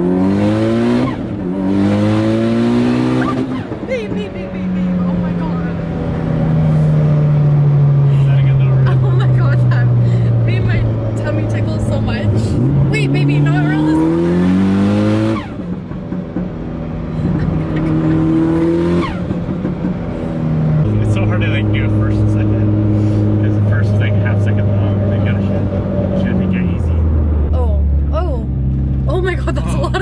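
Mitsubishi Lancer Evolution VIII's turbocharged four-cylinder engine pulling hard through the gears, heard from inside the cabin. Its pitch climbs in repeated runs, each cut off sharply by a gear change, with steadier stretches between.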